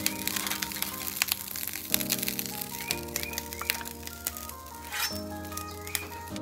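Background music, slow held chords that change every second or two, over a dense steady crackle from the hot griddle where the sauce is reducing in its skillet.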